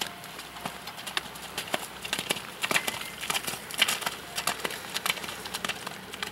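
A horse's hooves trotting through wet, puddled arena footing: a run of irregular sharp hoofbeats, loudest around the middle as the horse passes close by.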